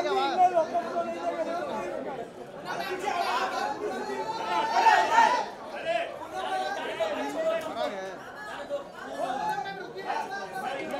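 Crowd chatter: many people talking over one another at once, with a louder burst of voices around the middle.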